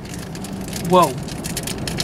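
Light rustling and handling sounds as a teal-and-white wallet is lifted and turned over, over a steady low hum. A man's short "whoa" comes about a second in.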